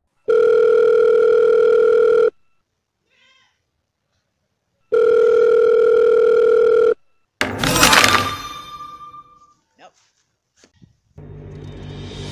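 Telephone ringback tone: two long beeps of about two seconds each, with a pause between them. About seven seconds in, a sudden loud burst of noise cuts in and fades over about two seconds. Music starts just before the end.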